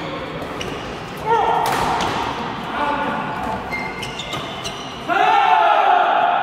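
Badminton doubles rally in a reverberant sports hall: repeated sharp cracks of rackets striking the shuttlecock, with a short held high-pitched squeal about a second in. A louder, sustained high-pitched sound with several overtones starts about five seconds in.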